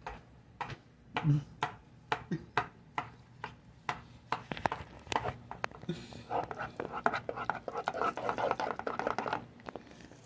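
A potato masher knocking and scraping in a cooking pot as potatoes are mashed by hand: a run of irregular sharp knocks, with a denser stretch of scraping and squashing in the second half.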